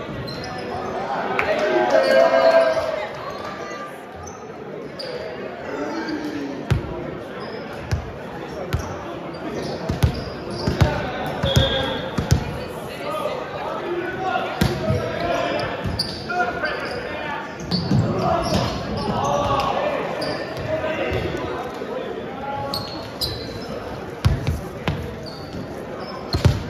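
Volleyballs being hit and bouncing on a hardwood gym floor: irregular sharp smacks that echo around a large gymnasium, amid players' voices and chatter. The loudest moment is a shout about two seconds in.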